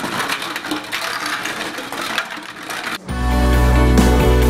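Glass bottles clinking against each other and a stainless steel bowl, with water sloshing, as they are swished around in rinse water. About three seconds in, background music with a heavy bass comes in.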